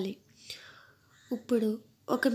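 Speech: a pause with only a faint hiss, then a short spoken phrase about a second and a half in.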